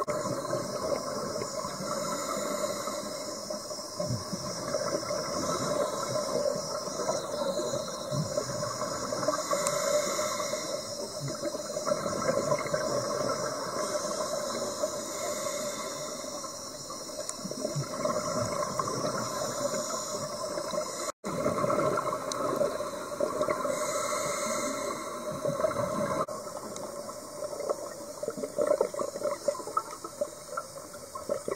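Underwater bubbling and rushing from a scuba diver's exhaled bubbles and regulator, heard through the water as a continuous noise that swells and eases in surges.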